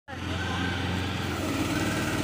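Engine of a small fire tender running steadily with a low hum while it drives the water pump feeding the hose.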